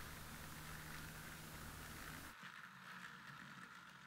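Battery-powered toy train running on plastic track, its small motor making a faint, steady sound.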